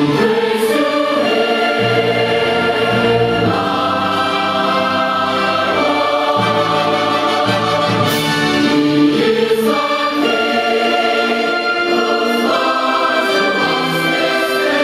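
A large massed choir singing slow, held chords with an orchestra accompanying, the harmony shifting every second or two.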